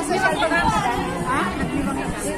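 Several women talking at once in overlapping, lively group chatter.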